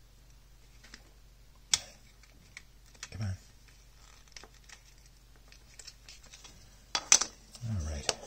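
Scattered sharp clicks and light knocks of a plastic battery-pack case being handled and pried open. The loudest cluster of snaps comes about seven seconds in, as the two case halves come apart. Brief low voice sounds come about three seconds in and again just before the end.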